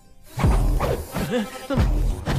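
Film soundtrack music with heavy thuds and whooshing effects. It cuts in suddenly about half a second in, after a brief hush.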